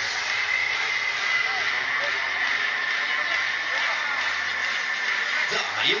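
Mondial Top Scan fairground ride running, a steady rushing mechanical noise with a constant high whine and faint voices of the crowd. The operator's voice comes over the loudspeakers in the last half-second.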